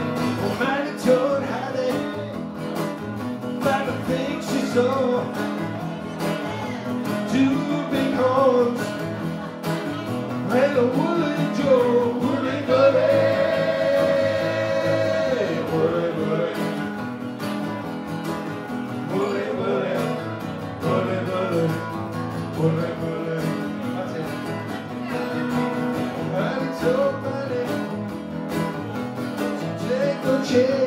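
Two acoustic guitars playing a song live, strummed and picked, with a melody line that slides between notes over them and holds one long note about halfway through.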